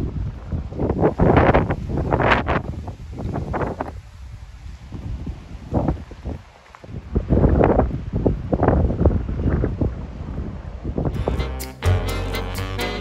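Strong gusty wind buffeting the microphone in irregular surges that rise and fall every second or two. Music starts near the end.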